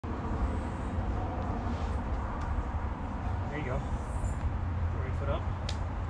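Steady low outdoor rumble, with faint voices about three and a half and five seconds in and a sharp tap near the end.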